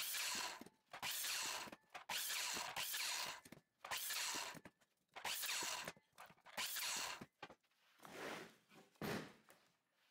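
Sliding miter saw making a quick series of crosscuts through a pine 2x3 against a stop block, one short cut about every second, tailing off near the end.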